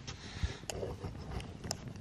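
Lit brass spirit burner giving a faint, steady rushing, with a few light knocks and clicks, one a low thump about half a second in and another near the end.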